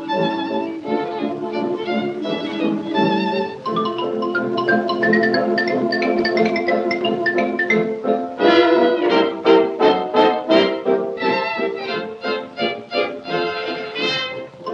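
Instrumental dance-band music from a Durium gramophone record, with a run of quick, short, louder struck notes beginning about eight and a half seconds in.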